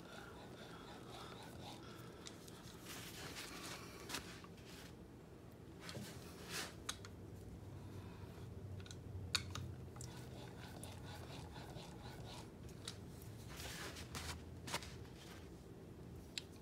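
Steel chisel blade, clamped in a roller honing guide, rubbed back and forth on a wet sharpening stone: faint gritty scraping strokes with a few small clicks, as a secondary micro-bevel is honed onto the edge.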